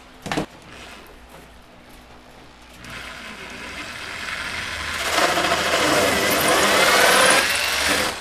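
Power drill boring a hole through one-inch foam board insulation for a light receptacle. The cutting noise builds from about three seconds in and is loudest over the last three seconds, with a wavering whine.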